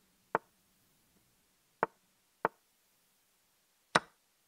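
Chess.com online board's move sound effects: four short wooden clicks of pieces being set down as moves are played in a fast bullet game, the middle two closer together.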